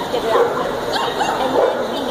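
A dog barking a few short times, with people talking around it.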